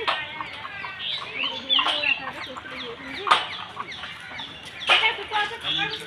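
Birds calling outdoors: short, sharp calls a second or two apart, with chirps between them.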